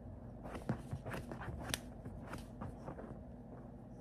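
A cockatoo biting and crunching a small toy with its beak: a quick, irregular run of crisp crunches and clicks that fades out near the end.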